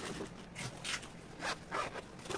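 Hands handling paper packing in a cardboard mailer box: a few short swishes and rustles of tissue paper and paper shred filler as the packing is smoothed and an item is set down into it.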